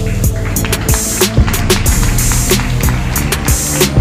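Loud electronic music with a steady beat and a deep bass drum.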